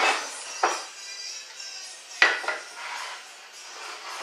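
Wooden blocks knocked together and set down on a wooden tabletop as they are positioned: a few sharp knocks, the loudest about two seconds in.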